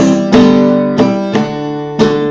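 Cutaway acoustic guitar strumming chords: a few strums that are left ringing and fade toward the end.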